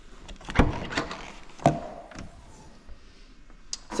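Volkswagen Golf tailgate being opened with its pivoting VW-badge handle. A loud clunk as the latch releases about half a second in, then a second knock with a brief ring about a second later as the hatch swings up.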